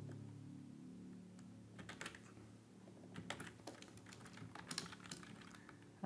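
Faint computer keyboard typing: scattered keystrokes in small clusters, over a faint low hum.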